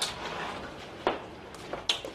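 Wardrobe doors being opened: a sharp click at the start and a short rustle, then two more knocks, about a second in and near the end.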